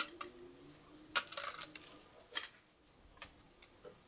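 Handling clicks and crinkles of a thin clear plastic bottle: a sharp click at the start, a short crackly cluster just after a second in, then single ticks near the end.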